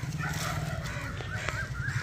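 Several short, wavering bird calls repeating over a low steady hum.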